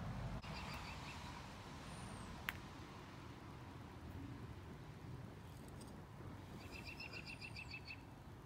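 A bird singing in the background: a rapid trill of evenly repeated chirps near the start and a longer one near the end, with a high falling note before each. A low rumble runs underneath, and there is one sharp click about two and a half seconds in.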